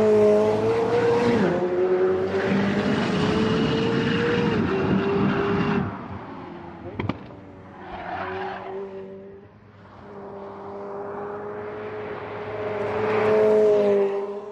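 McLaren 765LT's twin-turbo V8 running hard on track. It shifts up with a drop in pitch about a second and a half in, then fades after about six seconds, with a single sharp crack about seven seconds in. It grows louder again as the car comes closer near the end.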